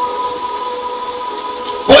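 Sustained keyboard chord: a few steady held notes, with no change through the pause.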